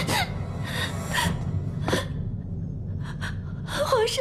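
A woman's shaky, gasping breaths, several short ones in a row, as she starts to cry in distress.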